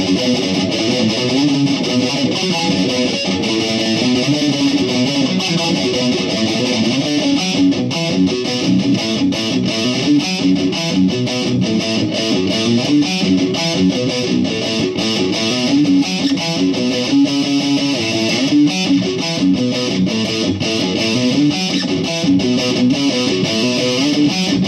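Electric guitar tuned down to drop B playing a riff, with a steady stream of rapid picked notes.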